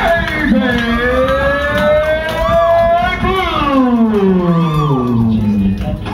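Ring announcer drawing out a wrestler's name in one long held call, its pitch rising and then sliding steadily down over several seconds, with crowd noise underneath.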